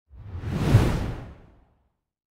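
A single whoosh sound effect that swells to a peak just under a second in and fades out by about a second and a half.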